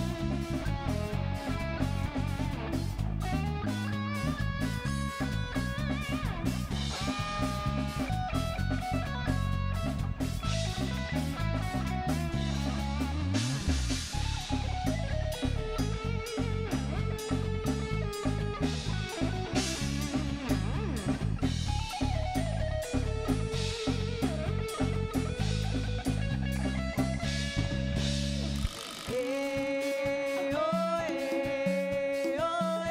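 Live band playing an instrumental stretch: drum kit, bass guitar and electric guitar, with a sustained melody line over a steady beat. About a second before the end, the bass and drums drop out briefly before the band comes back in.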